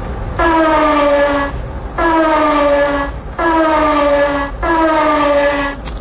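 Train horn sounding four long blasts, each about a second long and sliding slightly down in pitch, over a steady low rumble.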